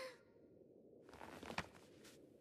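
Near silence, with a faint breath-like hiss starting about halfway through and a soft tick just after.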